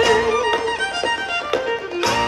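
Irish-style folk music led by a fiddle, with guitar accompaniment; a held note at the start, then a slightly quieter instrumental passage toward the end.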